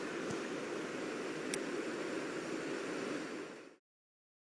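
Steady background noise with two faint clicks, cutting off abruptly near the end.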